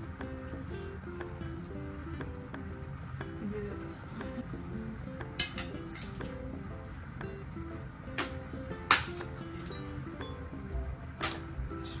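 Background music playing, with a few sharp metallic clinks of a metal spoon against a steel plate, the loudest about nine seconds in.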